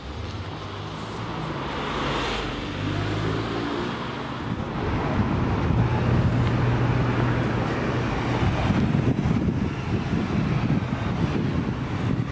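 A car engine running close by over street traffic noise, with a steady low drone that grows louder about five seconds in.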